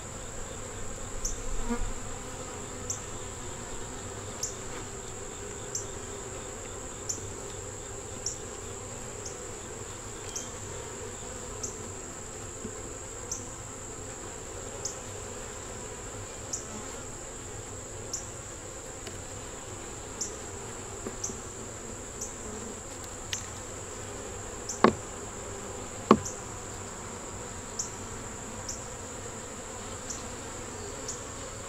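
Honey bees humming steadily around an open hive box, with a steady high-pitched tone above them. About 25 and 26 seconds in, two sharp knocks of wooden frames or the metal hive tool stand out as the loudest sounds.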